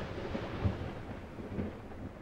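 A low, thunder-like rumble of noise that slowly fades away.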